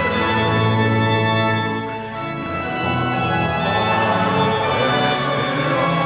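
Church pipe organ playing a hymn in sustained chords that change every second or so.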